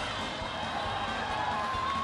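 Ballpark crowd noise: a steady din of many distant voices from the stands, with a faint held call rising above it near the end.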